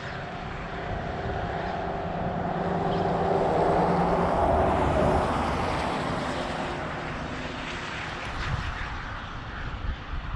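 Engine drone of something passing by, with a steady pitch, growing louder to a peak about halfway through and then fading away.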